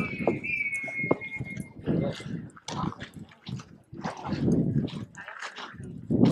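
Voices of people around at a busy outdoor site, with a thin, high whistle-like tone lasting about two seconds at the start and falling slightly in pitch.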